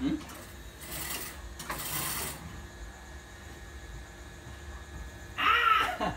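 Sheer fabric rustling twice in quick succession as someone shifts on the bed, then a short, high, wavering whine near the end.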